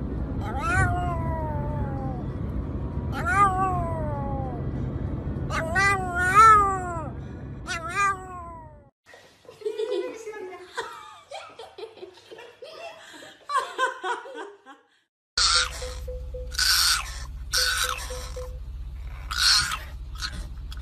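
A Pomeranian howling in a series of falling, wavering calls, about five in nine seconds, over the steady low rumble of a moving car. After that the sound turns to a quieter jumble. Near the end come short sharp bursts, with the car rumble back underneath.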